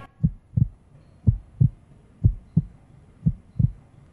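Heartbeat sound effect: low double thumps (lub-dub), about one pair a second, a suspense cue laid under the countdown.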